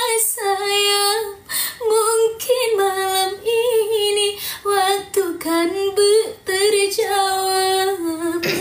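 Female voice singing a slow ballad unaccompanied, in phrases of long held notes with a wavering vibrato and short breaks between them.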